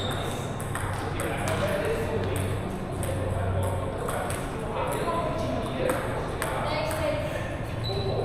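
Table tennis balls clicking off paddles and tables in irregular, overlapping rallies from several tables at once, with voices chattering underneath.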